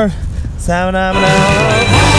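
A man's voice holds a single drawn-out note, then rock music starts a little past a second in.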